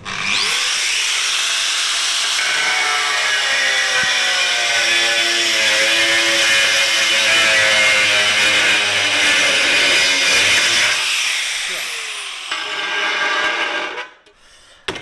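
Angle grinder spinning up with a rising whine and running a worn diamond core bit pressed on porcelain stoneware tile, grinding with a wavering tone. The bit has gone bald and no longer bites into the tile. Near the end the motor's pitch rises briefly, then winds down as it is switched off.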